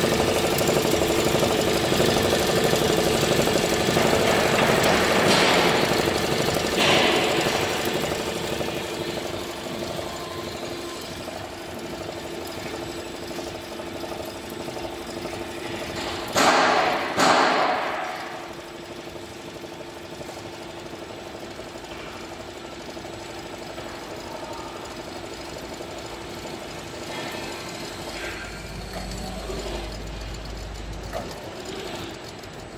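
Richpeace multi-needle cap embroidery machine stitching a cap at speed, its needle bar running in a fast, even mechanical rhythm. The sound is louder for the first several seconds and then steadier and lower. Two brief loud noises come a little past the middle.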